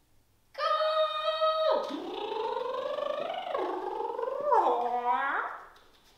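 A long wordless vocalisation starts about half a second in. It opens on a high held note, then goes through several falling, swooping glides and ends with a quick falling sweep.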